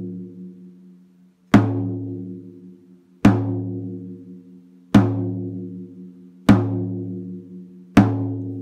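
A 12-inch tom, lifted so both heads ring freely, struck in the center with a drumstick five times at a steady pace of about one hit every second and a half. Each hit rings out with a low fundamental, read by the tuners as about 108 Hz, and a few higher overtones over it, fading before the next stroke.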